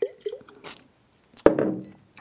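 Wine spat into a glazed ceramic pitcher used as a spittoon: short mouth sounds and a brief liquid splash. About one and a half seconds in, a single sharp knock, the loudest sound, as the pitcher is set down on the counter.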